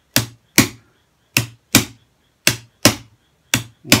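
A drumstick striking a homemade cardboard-box practice drum covered in white paper, playing a shuffle beat: eight sharp strokes in swung pairs, about one pair a second.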